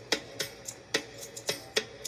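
Instrumental music with a steady beat of sharp percussive clicks, roughly every quarter second, over a faint held note.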